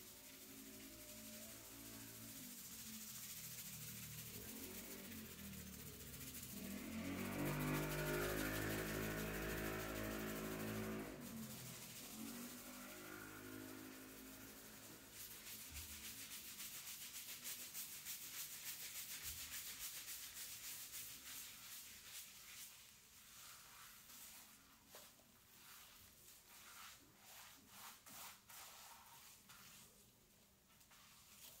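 Fingertips scrubbing a lathered scalp: close, rapid rubbing and crackling of shampoo foam in short wet hair, densest in the second half. In the first half a louder pitched hum with several tones swells, peaks and fades away.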